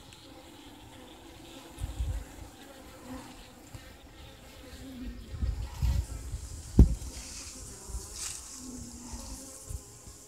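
Honey bees buzzing at an open hive box, a faint wavering hum. Low thumps come through, with a sharp knock about seven seconds in.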